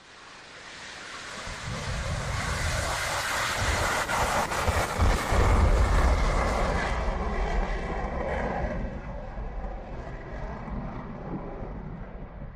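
F-15C Eagle fighter jet's twin turbofan engines at full takeoff power, a deep jet roar that builds as the aircraft lifts off and passes. It is loudest about halfway through, then fades as the jet climbs away.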